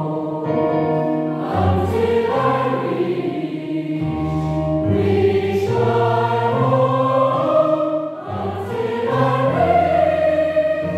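Mixed choir of women's and men's voices singing in several parts, holding sustained chords that change every second or so.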